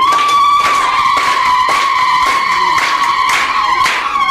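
A shrill, high tone held steadily through the public-address sound, with a regular beat of about two strokes a second underneath.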